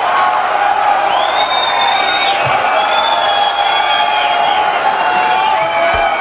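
Concert crowd cheering and shouting between songs, with a few long, piercing whistles.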